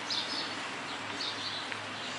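Birds chirping faintly in a few short high calls over a steady low background noise.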